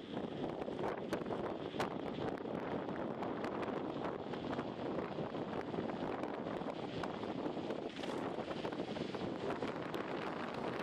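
Wind rushing over the microphone of a camera on a moving bicycle, a steady noise with scattered light clicks.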